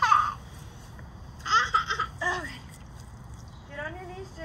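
A child's high-pitched squeal, falling in pitch, right at the start, then two short bursts of high giggling about one and a half and two and a quarter seconds in.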